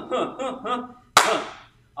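A man's brief voiced sounds, then a single sharp smack about a second in that rings briefly in the room.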